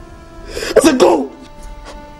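A man sobbing, one loud gasping cry a little under a second in, over soft film-score music with sustained notes.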